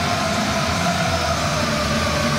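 Hockey arena crowd noise under a long held tone that sags slightly in pitch.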